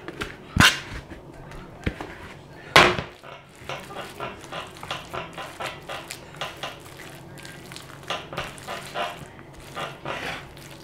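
Spatula and bowl knocking sharply against the glass baking dish twice, about two seconds apart, as the hash brown mixture is scraped out. Then a run of short soft scraping strokes, two or three a second, as the spatula spreads the mixture across the dish.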